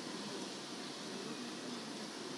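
Quiet, steady background hiss: room tone in a pause between speech, with no distinct sound event.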